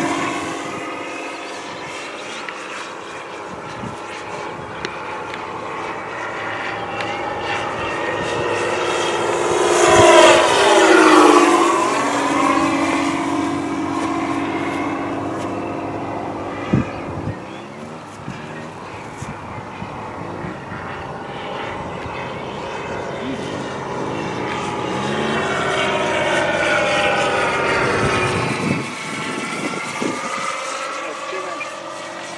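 Radio-controlled P-51 Mustang scale model flying overhead, its motor and propeller droning steadily. It passes closest about ten seconds in, louder, with the pitch dropping as it goes by, and swells again near the end as it comes round.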